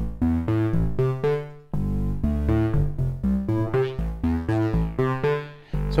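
A synthesizer sequence playing back in the Drambo modular groovebox app on an iPad: a repeating pattern of short pitched synth notes over a bass line, looping about every four seconds.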